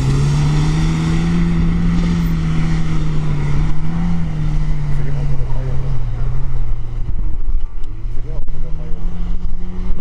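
Lada Niva 4x4's fuel-injected four-cylinder engine revving hard under load as the car climbs a steep loose-sand slope. The revs are held high, sag about seven seconds in, then rise again near the end. The crew takes this dropping of revs near the top for the reason the climb fails.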